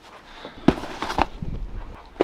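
Handling noise as the camera is picked up and moved: two sharp knocks about half a second apart, with smaller clicks over a low rumble.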